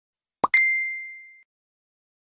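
Cartoon-style sound effect for an animated 'like' button: a short rising pop about half a second in, followed at once by a bright, high ding that rings on and fades away over about a second.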